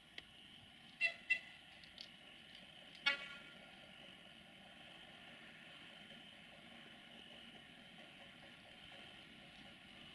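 Short toots of a locomotive horn: two quick blasts about a second in, a fainter one at two seconds and a stronger blast at about three seconds that rings briefly, over a faint steady rumble from the freight train.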